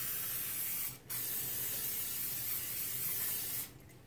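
Aerosol cooking spray hissing out of the can into a glass baking dish. The spray breaks off briefly about a second in, then runs again until it stops near the end.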